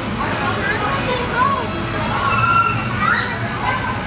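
Background hubbub of children's and other voices in a room, with no words clear.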